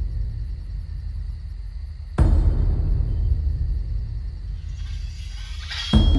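Dark cinematic trailer score: a deep booming hit about two seconds in, with a long rumbling low tail that slowly fades. A rising swell then builds near the end.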